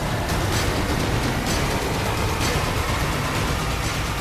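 TV news programme's opening theme music: a loud, dense track with a heavy low rumble and several sharp hits.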